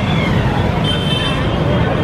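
Busy street traffic with a crowd talking: motor vehicles such as auto-rickshaws run in a steady, loud din under overlapping voices, and a short high tone sounds about a second in.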